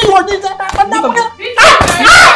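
People crying out and shouting in a physical scuffle: short, pitched, wavering cries, with a loud burst of shouting near the end.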